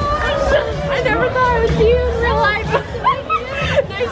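Several young women's voices overlapping in excited greeting chatter, with a low music bass line running underneath.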